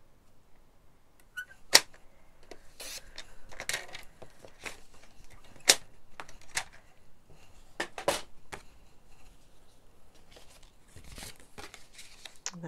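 Card stock and patterned paper being handled and moved on a craft desk: intermittent rustling with a few sharp clicks, the loudest about two seconds in, then near six and eight seconds.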